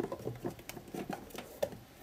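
Plastic craft pots and glue bottles being handled: soft rustling with a few light clicks and taps as they are picked up and moved.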